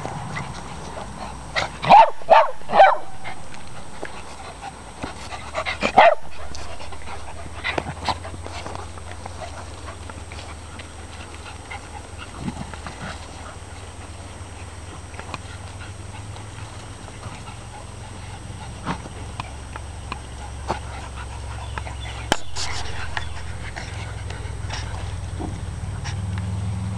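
Small poodles barking: three quick, loud barks about two seconds in and another about six seconds in, then only scattered lighter sounds of the dogs playing.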